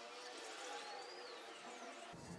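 Faint scratching of a felt-tip marker writing on a plastic bottle, with a thin high squeak that rises and falls near the middle.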